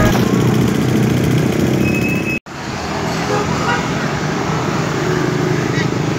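Street traffic noise, with a minibus engine running close by, and a short high beep about two seconds in. The sound drops out for an instant just after, then carries on as road noise with voices.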